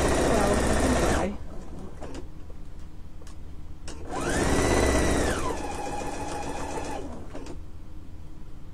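Electric sewing machine stitching a seam in two runs: the first stops about a second in, and the second starts about four seconds in, runs fast, then slows to a lower speed before stopping near the end.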